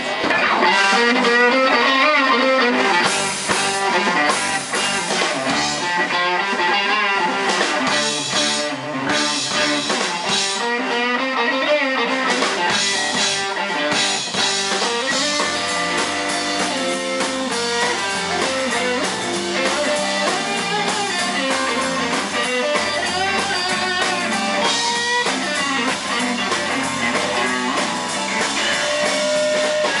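Live rock band playing: two electric guitars over a drum kit, a guitar lead line moving through notes above the rhythm.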